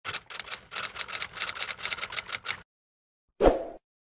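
Typewriter-style clicking sound effect: a fast run of key clicks for about two and a half seconds, then a pause and a single thump with a short ring after it, about three and a half seconds in.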